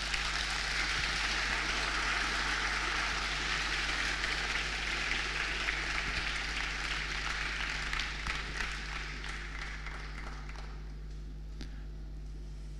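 Audience applauding in a large hall, steady for about eight seconds and then dying away.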